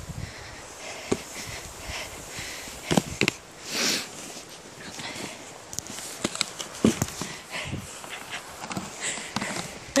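A dog playing with a snow shovel in snow: snow crunching and scraping, and a few sharp knocks of the shovel, the loudest about three seconds in and about seven seconds in.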